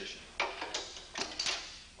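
Metal clunks and clicks as an indexing tool levers the clamping jaws of a Liftomatic 4-drum handler down into the lower, indexed position: about five sharp knocks, the loudest a little under half a second in and a cluster about a second and a half in.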